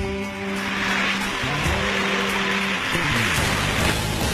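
Rock guitar music over the rolling noise of a gravity derby car's wheels running down a metal track. The rolling noise builds from about half a second in.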